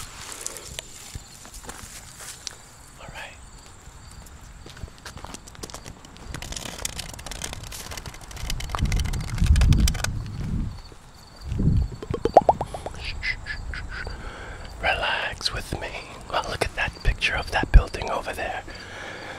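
Walking along an asphalt path with the camera in hand: scattered clicks and footfalls, low rumbles on the microphone about halfway through, and soft voice-like sounds near the end.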